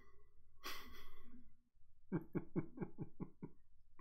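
A man laughing: a breathy gasp about a second in, then a run of about seven quick 'ha' bursts, each falling in pitch.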